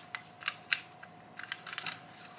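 Thin plastic keyboard membrane sheet and circuit board being handled, crackling and clicking: a string of sharp small clicks, bunched more closely in the second half.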